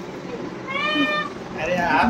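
A toddler's short, high-pitched squeal about halfway through, followed near the end by voices.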